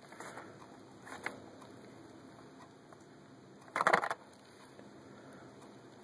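Quiet handling of a Hot Wheels blister-card package and a cardboard box, with faint rustles and small ticks, and one short, louder sound about four seconds in.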